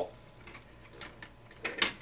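Light clicks and taps of plastic RC-car suspension parts and a bolt being handled as the bolt is slid up through the hub carrier's pivot ball: a few small clicks about a second in and a louder pair near the end.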